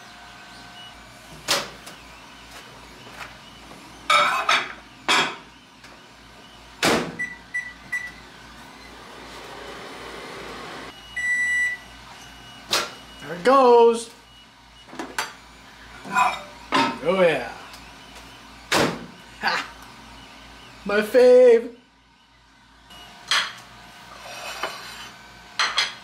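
A microwave oven is being used: the door latch clicks and knocks, a few short keypad beeps sound, there is a brief stretch of faint running hum, and then a single beep.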